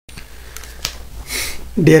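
A single sharp click, then a short breath drawn in close to the microphone, before a voice starts speaking at the very end.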